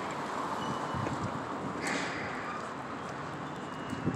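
Footsteps of a person walking on a concrete sidewalk, a steady run of soft footfalls over constant street noise.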